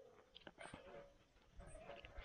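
A quiet pause between cuts with tin snips on a galvanised steel C-purlin: a few faint, short clicks about half a second in and light scraping near the end as the snip jaws are reopened and set on the steel.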